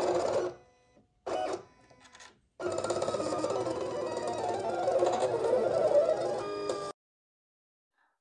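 Silhouette Cameo 4 cutting machine running a rotary-blade cut through felt: its motors make a whine of several shifting pitches, with a short burst early on and a longer run from about two and a half seconds in. The run cuts off abruptly shortly before the end.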